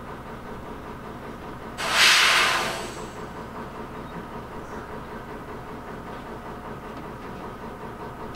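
A railway vehicle's steady low running noise, with one loud hiss of escaping air about two seconds in that lasts about a second and fades away, typical of a train's brakes being applied or released.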